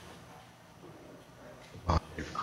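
Quiet room tone in a large room, broken near the end by one short spoken syllable from a low voice.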